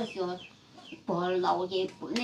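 Chickens clucking close by, with one longer drawn-out call about a second in.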